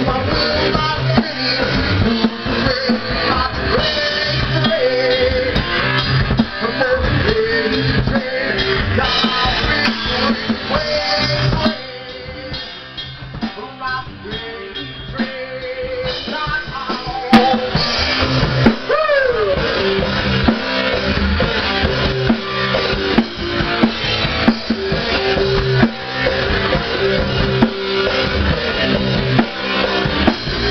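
A live rock band playing, with drum kit and electric guitar. It drops to a quieter stretch about twelve seconds in, and the full band comes back a few seconds later.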